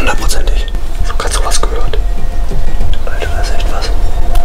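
Hushed whispering in short breathy bursts over a steady low rumble.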